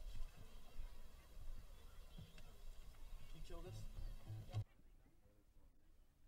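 Faint voices and low rumble on a quiet stage. The sound drops suddenly to a much quieter hush about four and a half seconds in.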